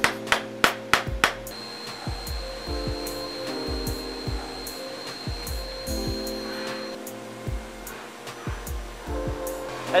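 A small hammer taps aluminium stem-cap blanks into a CNC mill's vise, about five sharp taps in the first second or so. Then the mill runs, cutting with coolant spraying, with a steady high tone for several seconds, under background music.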